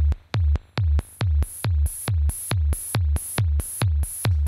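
ARP 2600 patch playing a steady electronic beat: a kick drum made by pinging the resonant filter, about three a second, alternating through the electronic switch with a white-noise hi-hat. The hi-hat comes in about a second in as its level is turned up on the voltage processor used as a mixer.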